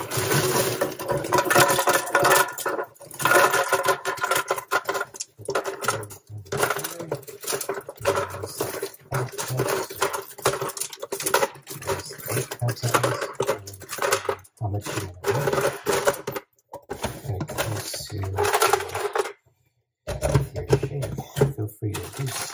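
Ice cubes poured from a plastic bag into a blender jar, a dense run of clattering clicks and knocks with short pauses and a brief silence near the end.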